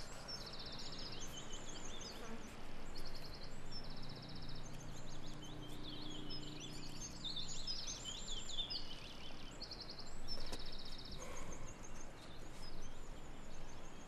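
Small songbirds singing: short, rapid high trills repeated every second or so, mixed with quick warbling chirps, over a faint low hum in the middle.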